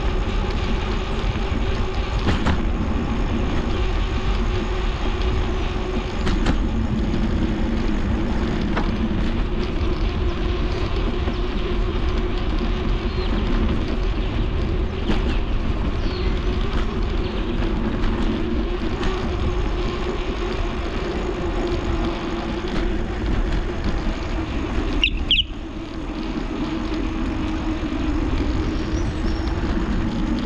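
Steady riding noise from a bicycle picked up by a handlebar-mounted GoPro Hero 9: tyre rumble on the concrete and paver path mixed with wind on the microphone, with a few faint knocks over the path's joints. A brief high squeak with a short dip in the noise about 25 seconds in.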